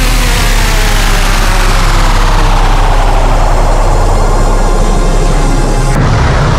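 Loud, distorted dubstep bass synth, a dense grinding sound over a steady low rumble, with its upper edge sweeping downward in pitch over several seconds.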